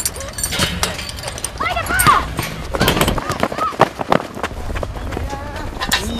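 Short shouted calls from voices, with many sharp clicks and knocks and a steady low rumble underneath.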